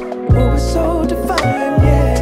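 Music: a slow song with deep bass notes that change pitch, sharp drum hits, and a wavering melody line.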